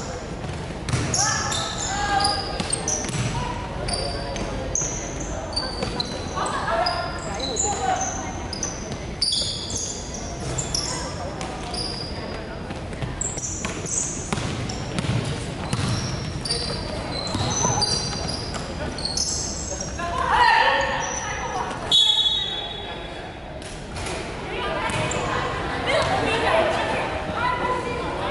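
Live basketball play on a hardwood gym floor: the ball bouncing, many short high sneaker squeaks, and indistinct player shouts in a large echoing hall. A brief high steady tone sounds a few seconds before the end.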